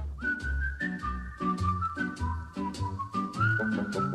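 A whistled melody, one clear note held and stepping between a few pitches with a short upward slide near the end, over backing music with a steady beat and bass.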